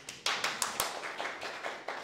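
Audience applauding: a dense, irregular run of hand claps that starts suddenly.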